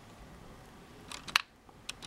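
Lego plastic pieces clicking as the set's scythe trap is handled: one sharp click a little after a second in and a fainter one near the end.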